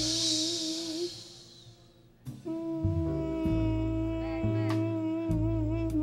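Live jazz: a wind instrument plays long held notes with a slow vibrato over upright bass. The music dies down about a second in, then the horn and bass come back in with a new phrase a little after two seconds.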